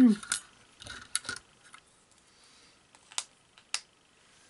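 A throat being cleared at the start, then scattered sharp plastic clicks and taps as the clear cutting plates of a manual die cutting machine are handled, with two last clicks near the end.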